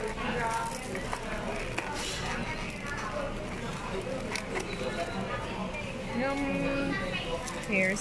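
Indistinct chatter of many voices in a busy fast-food restaurant, with a few light clicks and rustles as a foam takeout clamshell is handled and opened.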